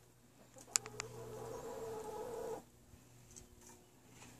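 A hen in a straw nest box giving a low, drawn-out grumbling call for nearly two seconds that cuts off abruptly, after a few sharp clicks just under a second in.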